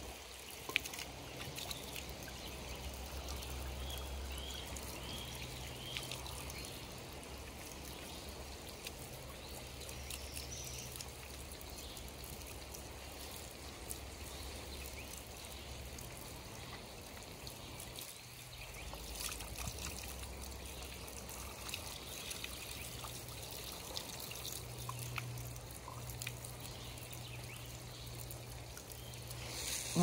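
Free-flowing spring water running steadily out of metal pipe spouts, pouring and trickling onto wet ground.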